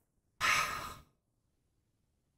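A person's single breathy sigh, about half a second long, starting just under half a second in and fading out.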